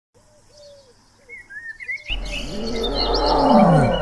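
Birds chirping faintly, then about two seconds in a tiger's roar starts and swells, its pitch falling as it grows louder toward the end.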